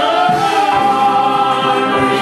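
Mixed choir of children and adults singing a gospel song into handheld microphones, holding long sustained notes.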